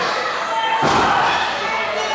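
A single heavy slam about a second in: a wrestler's body hitting the wrestling-ring mat, with a brief hollow boom from the boards under the canvas, over voices echoing in a large hall.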